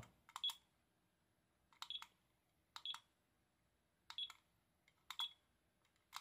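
SkyRC iMAX B6 mini balance charger's buttons pressed five times about a second apart, each press a faint click followed by a short high beep, as its menu is stepped through.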